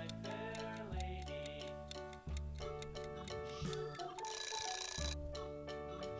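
Light background music over a countdown timer, with a bright ringing alarm about four seconds in that lasts about a second and marks the end of the countdown.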